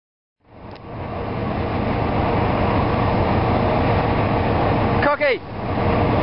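Steady rushing wind buffeting the camera microphone on an open ship's deck at sea, fading in about half a second in after a moment of silence. A brief voice with a falling pitch cuts through just after five seconds.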